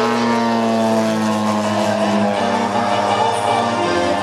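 Petrol engine of a large RC aerobatic plane, a Pilot RC 103-inch Laser, running in flight under background music.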